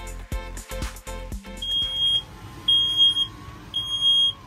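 Music with a beat for the first second and a half. Then a smoke alarm sounds three long, high, steady beeps about a second apart, set off by breakfast cooking.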